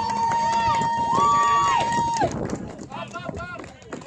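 Spectators yelling and cheering a base hit. One long, high, held yell carries through the first two seconds, a second voice joins it briefly, and shorter excited shouts follow.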